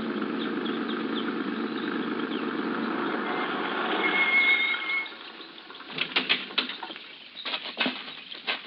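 Sound effect of a truck engine running, pulling up with a brief high brake squeal near the middle and cutting off about five seconds in. A few sharp clicks and knocks follow.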